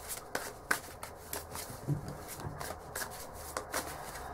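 A deck of tarot cards being shuffled by hand: a run of short, irregular card clicks and flicks.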